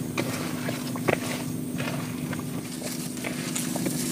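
A hand mixing fish with chopped vegetables and spice paste in a metal bowl: irregular wet squelches and light clicks, over a steady low hum.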